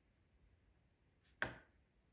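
A single short, sharp knock about one and a half seconds in, dying away quickly; otherwise near silence.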